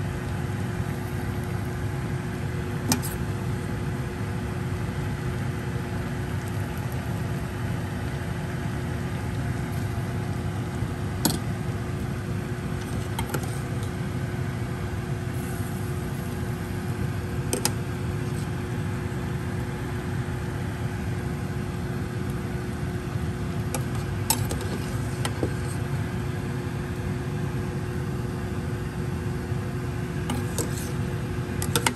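Steady mechanical hum with a faint steady tone, like a kitchen fan running. Over it come a handful of short clinks of a metal ladle against a steel pot and a bowl as noodle soup is served out.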